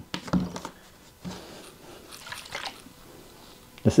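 Faint handling of a plastic drinking bottle as its cap is worked: a few light clicks and rustles.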